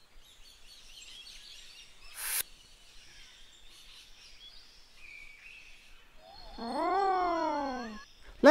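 Faint outdoor ambience with small bird chirps. About two seconds in comes a short noisy swish. Near the end a long drawn-out voice-like call rises and falls in pitch, the loudest sound here.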